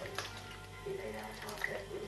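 Soup being ladled from a metal pot into a bowl: faint liquid drips and a few light clicks of the plastic ladle, with a faint wavering tune beneath.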